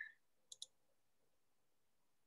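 Near silence broken by two faint, quick clicks about half a second in.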